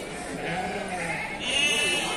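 Sheep bleating close by: one call builds from about half a second in and is loudest in the last half second, with people talking in the background.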